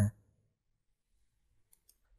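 A few faint computer-mouse clicks near the end, after near silence.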